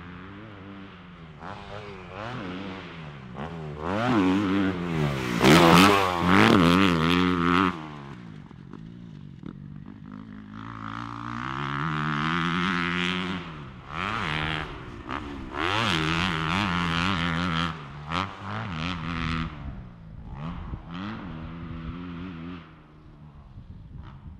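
Kawasaki KX250 four-stroke motocross bike running on a dirt track, its engine note climbing and dropping again and again with the throttle, loudest about five seconds in.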